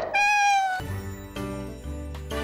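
A single short cat meow, falling slightly in pitch, opening a logo jingle and followed by light background music.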